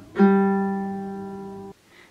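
A single low-G fourth string of a ukulele plucked once with the thumb, the opening note of the strumming pattern. The note rings and fades, then stops suddenly after about a second and a half.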